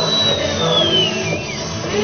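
A single high whistle gliding slowly downward in pitch over about a second and a half, over a low steady background murmur.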